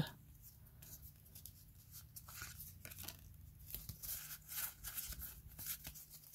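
Faint, scattered rustles and flicks of Pokémon trading cards being handled and slid between the fingers.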